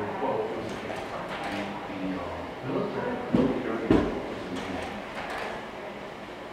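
Slide projector advancing to the next slide: two mechanical clacks a little over half a second apart, over low murmuring voices.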